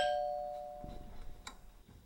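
Two-note doorbell chime: the second, lower note strikes and rings out, fading away over about a second and a half. A faint click comes near the end.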